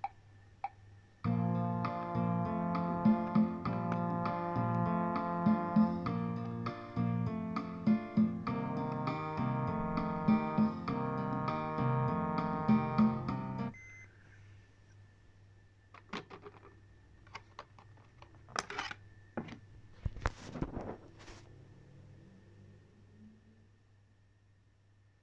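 Instrumental accompaniment track from a band play-along practice CD playing back on a Sony D-E351 CD Walkman, starting about a second in and cutting off suddenly about halfway through as playback is stopped. Then a scatter of sharp plastic clicks and knocks as the player is handled and its lid opened.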